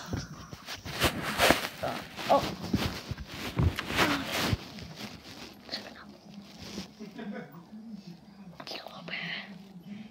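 Handling noise of a phone held close to clothing: rubbing, bumping and clicks, thickest in the first four and a half seconds, with faint whispering. After that it goes quieter, with a low steady hum and a little murmur.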